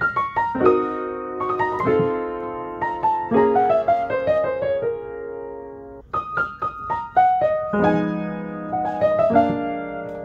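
Hardman piano playing a jazz lick over a minor ii–V–i in B♭ minor (Cø7, F7, B♭-7): a run of single notes over left-hand chords, settling on a held chord. About six seconds in, the same lick starts again in E♭ minor.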